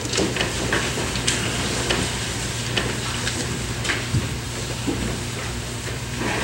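Rustling and shuffling of a congregation settling into the pews after standing, with scattered small knocks and the handling of books and papers at the lectern. A steady low hum lies underneath.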